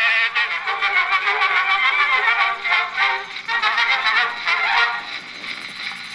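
Music from an early cylinder record, played acoustically through the horn of a homemade electric-motor Edison Class M-style cylinder phonograph. The music thins out and gets quieter near the end as the record finishes.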